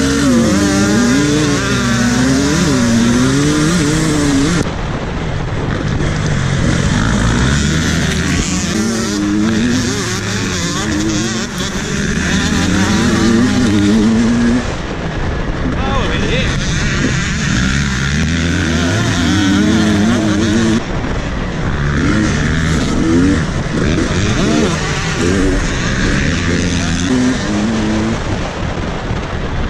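Dirt bike engine revving hard under race acceleration, its pitch climbing and dropping again and again as it shifts through the gears, over a steady rushing noise. The sound jumps abruptly a few times where the footage is cut.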